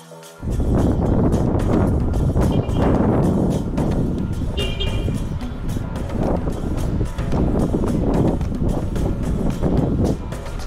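Wind rushing over the microphone aboard a moving boat at sea, a loud uneven rumble that starts suddenly about half a second in, as the music cuts off.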